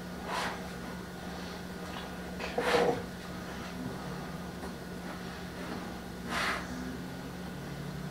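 A man breathing out through his nose in three short puffs a few seconds apart, the middle one loudest, over a steady low hum.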